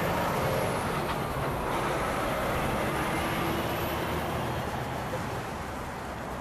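Steady outdoor background noise, a broad hiss over a low rumble, that cuts in abruptly just before and eases slightly toward the end.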